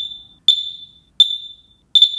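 Cavius smoke alarms in installation test mode, chirping intermittently: short, sharp high-pitched chirps on one pitch, each dying away quickly, about four in two seconds. This is the whole-system test that is started by holding the master unit's test button for 10 seconds.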